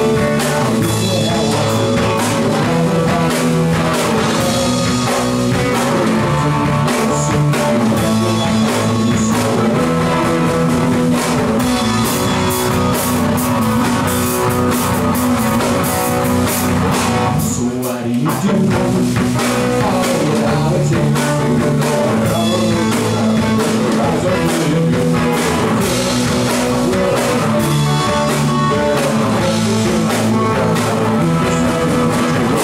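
Live rock band playing: amplified electric guitars and a drum kit. The band drops out briefly, with a short dip, about eighteen seconds in.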